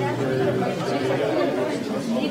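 Indistinct chatter: several people talking at once in overlapping conversations, with no single voice clear.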